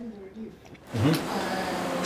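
A quiet pause, then about a second in a man's voice says 'mm-hmm, uh' over a steady hiss that comes up at the same moment and stays.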